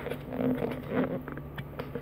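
Handling noise from a phone tripod being adjusted: light rustling and a few soft clicks as the mount is bent and repositioned.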